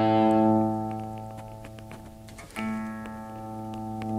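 Electric guitar chord through an amp and volume pedal, ringing and dying away, then struck again about two and a half seconds in and swelling louder as the volume pedal is rocked forward.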